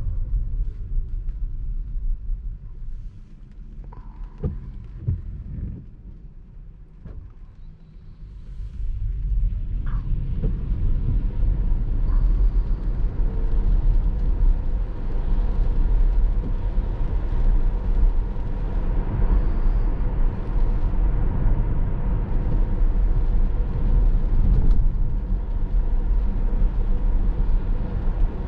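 Road and tyre noise on wet pavement inside the cabin of a Tesla Model S Plaid. It is subdued while the car creeps along slowly, with a few soft knocks, then builds to a steady rush about ten seconds in as the car accelerates away.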